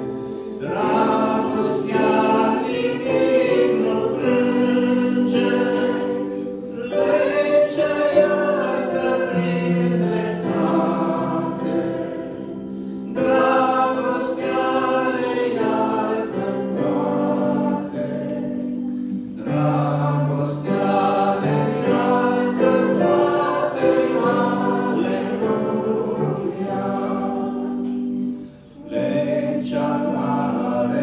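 A man and a woman singing a hymn together as a duet into one microphone, in phrases with short breaks between lines, the longest break near the end.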